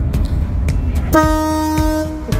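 A ship's horn sounding one steady blast that starts suddenly about a second in and holds for about a second, over background music with a beat.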